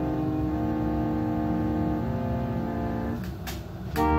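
Organ playing a slow piece in held chords that change every half second or so. Near the end the chord releases with a brief rustle, and a louder, fuller chord comes in.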